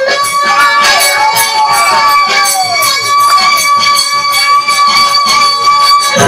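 Live Bengali Baul folk music: a woman's voice sliding through a melodic phrase over a fast, steady percussion beat, with one note held steady for about five seconds from a second in.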